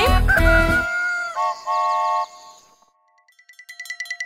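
A children's song ends, then a cartoon rooster crows: a call that glides up onto one long held note and drops to a shorter, lower one. After a moment of quiet, a rapid high ringing starts faintly near the end and grows louder.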